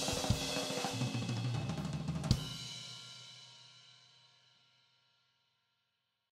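Thrash metal band recording with distorted electric guitars and bass, with traces of drum hits still in the mix; it ends on a final struck chord a little past two seconds in that rings out and fades to silence by about five seconds.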